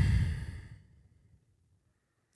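A man's breathy sigh trailing off from a hesitant 'uh', fading out within about a second as he tries to remember his question.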